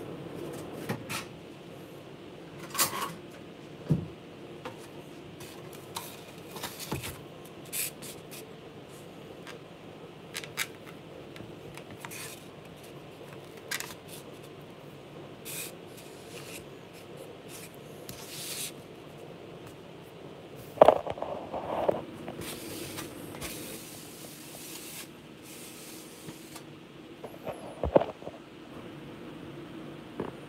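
Scattered clicks, knocks and scrapes of a plate and kitchenware handled on a countertop while a soft, ripe canistel fruit is pulled apart by hand, over a steady low hum. Two louder knocks come about two-thirds of the way in and near the end.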